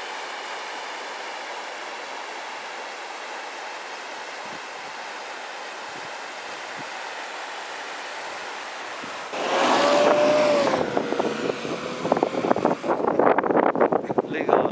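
Steady rush of a river and small waterfall. About nine seconds in it gives way to louder, gusty outdoor noise with a held mid-pitched hum, then irregular knocks and gusts.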